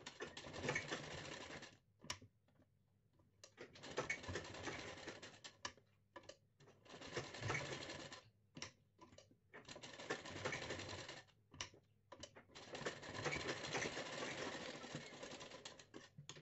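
Sewing machine stitching a seam through fabric in five short runs of one to three seconds each, stopping and starting between them, with a few single taps in the pauses.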